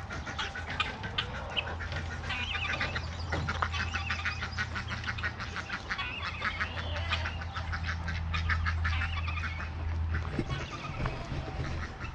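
A flock of backyard chickens clucking and calling, many short overlapping calls running on without a break.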